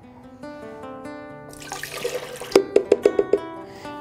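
Acoustic guitar background music plays throughout. Midway, a cup of water is poured into a plastic blender jar as a brief splashing hiss, followed by a quick run of sharp knocks or splashes.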